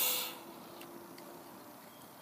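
Soda jetting out of a small dart-punched hole in a shaken, pressurised can: a loud hiss that dies away within the first half-second, followed by quiet with a few faint ticks.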